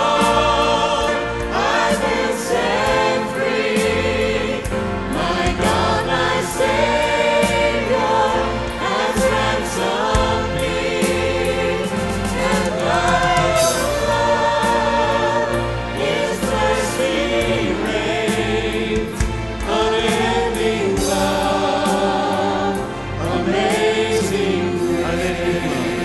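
A mixed gospel vocal group of seven men and women singing in harmony into handheld microphones, with instrumental backing.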